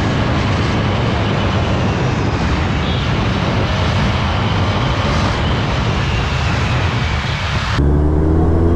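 A steady rush of wind on the camera microphone of a moving motorcycle, with road and engine noise underneath. It changes abruptly near the end.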